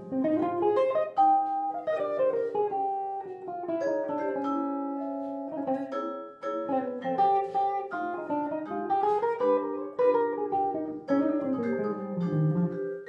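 Jazz duo of electric guitar and vibraphone: the guitar plays quick runs of single notes that climb and fall, and struck vibraphone bars ring alongside it.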